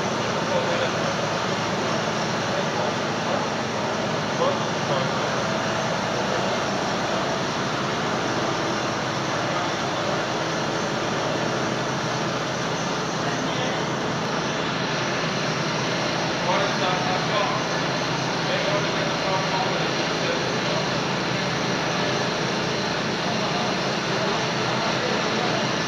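Steady, loud machinery noise of a running sawdust-fired biomass steam boiler plant, its fans and combustion equipment working continuously without pause.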